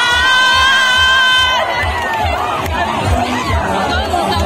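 A concert crowd cheering and shouting over loud amplified music with a steady bass beat. One high voice holds a long, steady cry for about the first second and a half, then scattered shouts go on.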